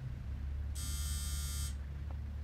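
A steady low hum, with a high electronic buzz that lasts about a second in the middle.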